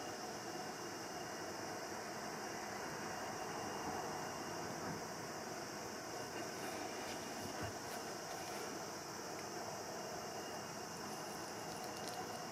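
Steady background hiss and hum of room tone, with a faint tap a little past halfway.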